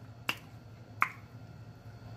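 Two short, sharp clicks about three-quarters of a second apart, the second with a brief ring, over a faint steady low hum.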